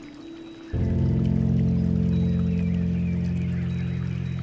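Slow piano music: a deep chord struck about a second in rings and slowly fades, over a bed of running water and faint bird chirps.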